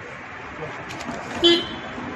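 A short vehicle horn toot about one and a half seconds in, over steady street background noise.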